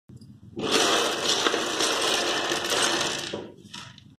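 A heap of small hard plastic building blocks clattering and scattering across a tabletop: a dense rattle for about three seconds, then a short, smaller rattle just before the end.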